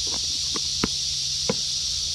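Steady high-pitched drone of insects, with a few light knocks from a small plastic container being closed and set down on a wooden table, the two clearest a little under a second in and about half a second later.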